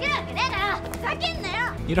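Young women crying out in high-pitched voices, several short rising-and-falling shouts, over a steady held music chord.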